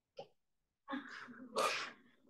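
A person's short breathy laugh, ending in a brief hissing exhale about a second and a half in.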